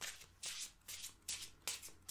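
A deck of oracle cards being shuffled by hand: a run of short swishes of the cards, about three a second.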